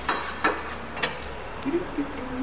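A low steady machine hum with three sharp clicks or knocks in the first second, then a short low tone near the end.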